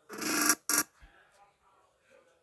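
Two loud, harsh, voice-like bursts, the first about half a second long and the second shorter, played back from the animation's audio track in the app.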